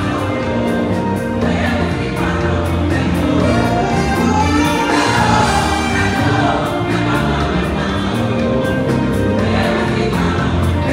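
Live gospel music played loud: a band with keyboard, bass and drums keeping a steady beat while a choir of backing singers sings.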